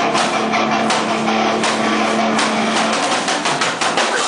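Hardcore punk band playing live: distorted electric guitars over drums with repeated cymbal and drum hits. A held low note runs under it and stops about three seconds in.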